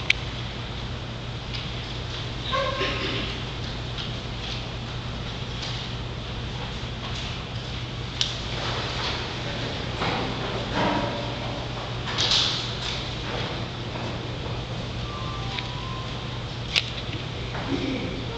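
A choir getting to its feet in a church: shuffling and rustling, scattered quiet voices and a couple of sharp knocks, over a steady low hum.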